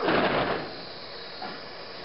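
A short burst of noise, fading over about half a second, as a crowd of students drops their arms to their sides together on a drill command: many hands and sleeves slapping and rustling at once, slightly out of step. A low crowd background follows.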